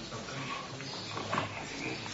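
Close-up handling noise of a microphone being passed over and fitted: rubbing and fumbling, with a few short clicks a little over a second in.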